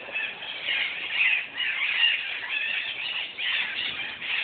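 A flock of parrots calling constantly, many short calls overlapping into one continuous chorus.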